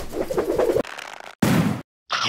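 Sound effects of an animated logo intro. A low pitched sound fills most of the first second, then a short burst of noise comes about a second and a half in.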